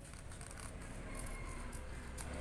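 Scissors cutting through a paper sewing pattern, faint and steady.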